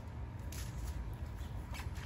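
Steady low outdoor background rumble with two faint clicks, one about half a second in and one near the end.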